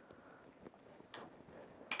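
Quiet handling noise: a few faint, light clicks and taps as a surveying bipod leg and its threaded foot piece are handled on a cloth-covered table, the clearest click near the end.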